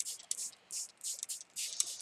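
Small hand-pump mister spraying dark brown ink mist in a rapid run of short, high-pitched hisses, about four or five a second.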